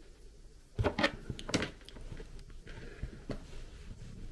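Sharp metallic clicks and clacks of a folding multitool and small metal enclosure parts being handled, a quick cluster about a second in and one more click near the end.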